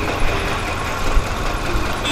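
Motor vehicle engine noise in street traffic, a steady low rumble with hiss, as a cargo truck drives past close by.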